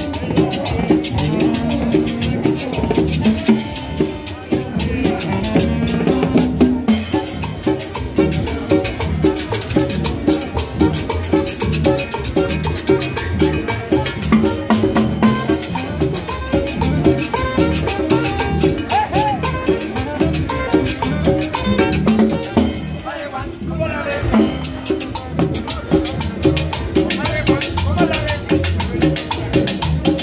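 A live Latin dance band playing an upbeat, steady rhythm on upright double bass and conga drums.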